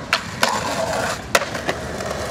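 Skateboard on concrete: wheels rolling and scraping, broken by several sharp clacks of the board hitting the ground, the loudest about two-thirds of the way through.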